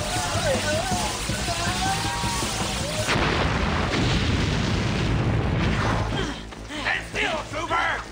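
TV action-scene soundtrack: music with voices, then a sudden boom about three seconds in that rumbles on for a few seconds. Sharp hits and voices follow near the end.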